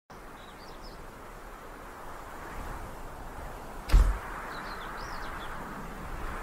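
A steady hiss that grows slightly louder, with a few faint, short, high chirps near the start and again about four and a half seconds in, and one loud thud about four seconds in.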